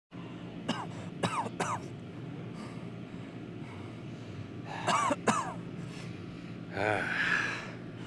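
A man coughing and groaning in pain. There are three short coughs about a second in, two more about five seconds in, and a drawn-out "uh" groan near the end, over a steady low hum.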